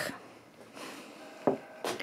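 Quiet handling of small plastic toys: a soft rustle, then two light clicks near the end as a toy figure is set down on the table.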